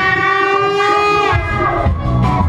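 Live band holding a long sustained chord with the bass and drums dropped out, horns prominent. The held notes fall away in pitch about 1.3 s in, and the full band with bass and drums comes back in just after.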